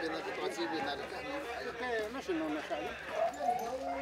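A group of people chatting, several voices overlapping at once with no single speaker standing out.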